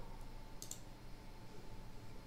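A single computer mouse click about two-thirds of a second in, over a faint steady background hum.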